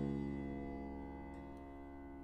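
Piano chord left ringing and slowly dying away, its several notes fading steadily over about two seconds.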